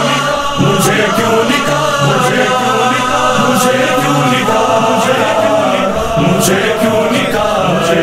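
Chorus of voices chanting together in harmony: the vocal intro of an Urdu manqabat.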